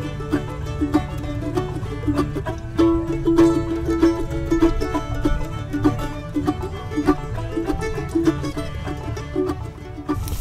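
Acoustic bluegrass music: string instruments picked fast in a steady run of short notes, with one note held a little longer about three seconds in.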